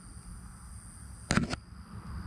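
Night insects such as crickets trilling steadily in the background, with two sharp knocks about a fifth of a second apart, about a second and a half in.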